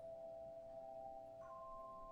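Handbell choir ringing: a bell is struck at the start and a higher one about a second and a half in, their clear tones ringing on and overlapping with the earlier notes.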